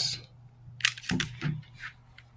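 A few short clicks and knocks about a second in, with a smaller one near the end: groceries being handled and set down on a table.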